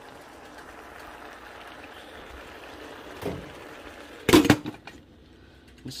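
A pot of pasta and spinach cooking on the stove with a steady hiss, with a soft knock about three seconds in. A little after four seconds a glass pot lid clanks onto the pot, the loudest sound, and the hiss then drops lower.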